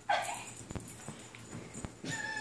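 A small dog gives one brief whine that falls steeply in pitch at the very start, followed by a couple of faint clicks.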